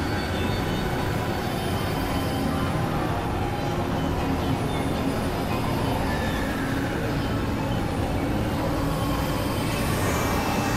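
Dense experimental electronic noise: several music tracks layered and processed into one steady, rumbling drone, with faint sustained tones and slow glides running through it and no clear beat.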